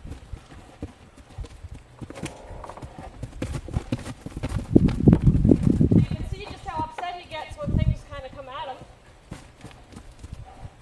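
Hoofbeats of a horse trotting and cantering on grass while being lunged in a circle, with irregular dull thumps. In the second half comes a long, wavering pitched call lasting about two and a half seconds.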